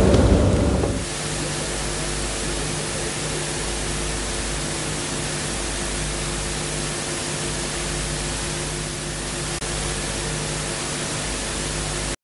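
Steady recording hiss with a low electrical hum underneath, left after a louder sound fades out in about the first second.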